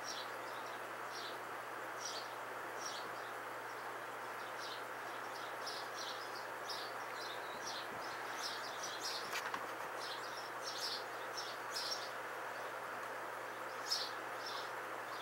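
Short, high-pitched chirps repeating irregularly, a few a second at times, over a steady background hiss.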